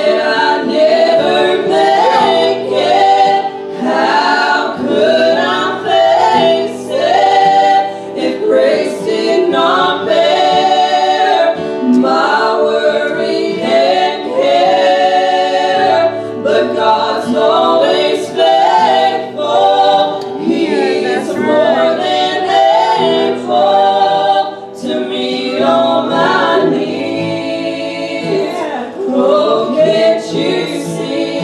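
A small vocal group of several women and a man singing a gospel song together into handheld microphones, amplified through the church's speakers.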